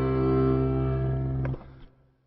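Background music for a silent film: a held chord that stops abruptly about one and a half seconds in, with a faint click just after.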